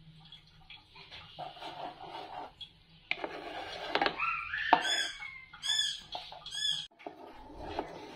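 Wooden spatula stirring melting butter in a steel pan for ghee, with soft scraping and sloshing. From about halfway in, a rising squeal is followed by three short high-pitched chirps spaced under a second apart, which are the loudest sounds.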